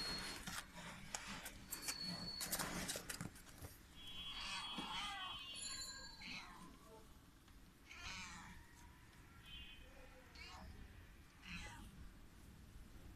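Kittens about a month old mewing several times in short, high calls. Clicks and scrapes fill the first few seconds, before the calls begin.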